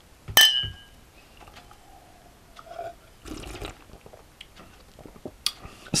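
Two glass beer glasses clinking together once in a toast, a sharp clink with a short bright ring that fades within about half a second.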